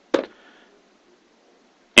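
A single short knock just after the start as a Lenovo ThinkPad X131e Chromebook's lid is shut onto its base.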